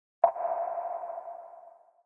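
A single electronic ping sound effect for the logo reveal: a sharp start about a quarter second in, then one mid-pitched tone that fades out over about a second and a half.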